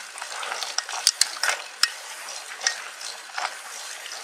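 Mountain bike tyres rolling fast over a dry dirt and gravel trail, a steady crackling hiss, with sharp clicks and rattles from the bike and loose grit, the loudest a little after one second in and again near two seconds.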